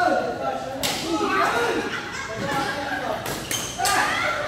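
Badminton rackets hitting a shuttlecock in a rally: sharp cracks, one about a second in and three close together near the end, echoing in a large hall over people talking.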